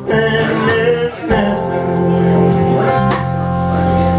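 Live band playing an instrumental passage on electric guitar, acoustic guitar and electric bass, with steady held notes and a brief dip about a second in.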